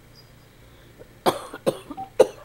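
A person coughing: a quick run of short, harsh coughs that starts a little over a second in.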